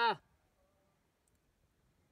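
A short excited shout of "Yeah!" right at the start, then near silence with only a faint tick or two.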